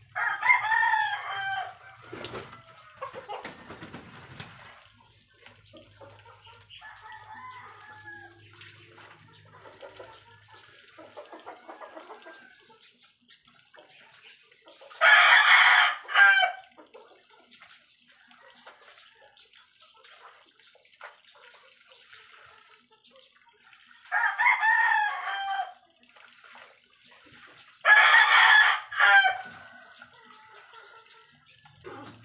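A rooster crowing four times: once at the start, once about halfway through, and twice close together near the end. Between the crows there is quieter splashing and scrubbing of wet laundry by hand in a basin.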